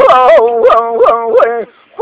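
A man singing Kurdish hore, unaccompanied, his voice sliding and trilling rapidly in pitch. The phrase ends with a short fall about one and a half seconds in.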